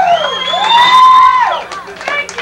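High siren-like wails, each rising and then falling in pitch over about a second, overlapping one another.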